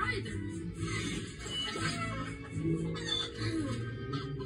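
Cartoon soundtrack heard through a TV speaker: background music with a chicken clucking and a character sighing.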